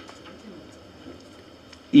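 A pause in a man's speech into a microphone: faint room noise, with his voice starting again near the end.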